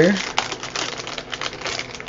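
Plastic packaging rustling and crinkling as it is handled, with a rapid irregular run of small clicks and taps.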